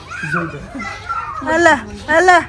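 Children's voices shouting and calling out while they play, with a loud high-pitched shout about one and a half seconds in.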